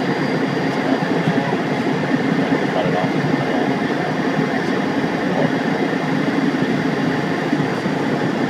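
Steady cockpit noise of a single-engine light aircraft rolling out on the runway after landing: engine and wheels on the pavement, heard from inside the cabin.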